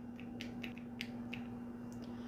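Faint, scattered clicks as a foundation bottle is handled and dabbed against the cheek, over a steady low hum.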